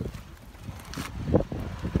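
Wind buffeting the microphone: irregular low rumbling gusts, the strongest about a second and a half in.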